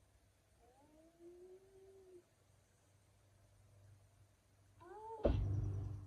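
Two meowing cries: a drawn-out one about a second in that rises and falls, and a shorter rising one near the end. Right after the second comes a sudden loud burst of noise that fades within about half a second.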